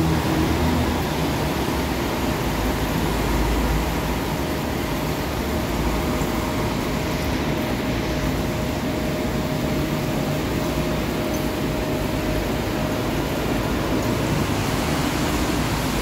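Diesel coach engines running as buses manoeuvre through a covered bus terminal: a steady low rumble under a wash of noise. A faint steady whine runs for several seconds in the middle.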